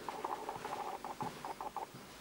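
Footsteps on a tiled floor, a dull step about every half second, with a quick run of short squeaky chirps over them.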